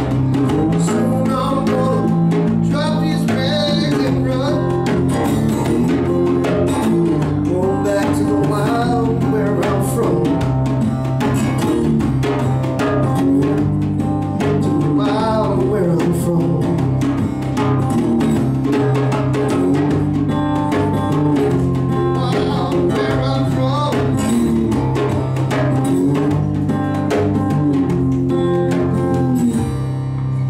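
Instrumental passage of a live song: a lap steel guitar played with a slide, its notes gliding up and down, over a hand drum beaten with the palms in a steady rhythm.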